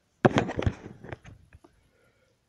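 A quick clatter of knocks and rustles close to the microphone, from objects and the camera being handled. It starts loud about a quarter second in and trails off over about a second and a half.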